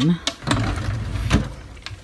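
Drawers of a white drawer unit being pushed shut and pulled open. There is a click, then a sliding rumble along the runners with a knock partway through.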